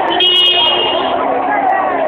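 A vehicle horn sounds once, a steady tone held for just under a second, over people's voices and street traffic.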